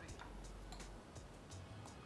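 Metal forks clinking and scraping against white ceramic bowls as noodles are stirred, a quick series of light clicks about three a second.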